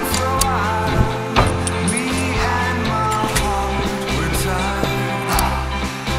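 Trailer music with a stepping bass line, melodic lines and repeated sharp percussive hits.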